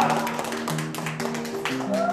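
Background music: a run of pitched notes changing in steps, with quick, sharp clicks over them.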